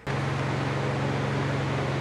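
Electric ventilation fans in a home-built paint booth running steadily: an even rushing noise over a low, constant motor hum.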